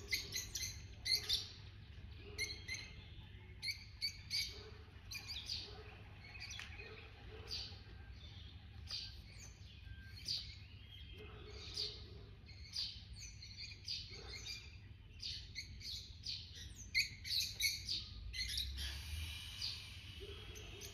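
Birds chirping, many short calls one after another, over a low steady rumble.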